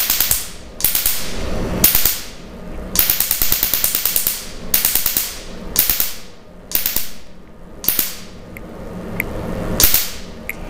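A tattoo-removal laser firing rapid pulses into tattooed skin, each pulse a sharp snap. The snaps come in runs of about half a second to a second and a half, with short pauses between runs as the handpiece is moved over the tattoo.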